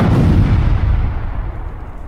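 Explosion sound effect: one sudden deep boom that rumbles and dies away over about two seconds.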